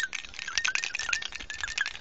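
Thin sheet-metal fuel-gauge float from a 1972 Ford F-350 tank sender shaken by hand, a loose ball of solder rattling inside it in quick clicks. The solder got in while a hole in the float was being soldered shut, and may keep the float from riding as high as it should.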